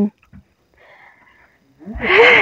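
A person's breathy, wheeze-like exhalation starting near the end, loud after a quiet stretch of faint breath and handling noise.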